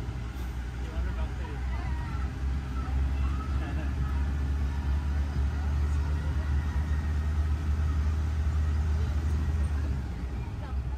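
Open-sided park shuttle driving along, its running gear giving a steady low drone that grows a little stronger a few seconds in; faint voices of passengers underneath.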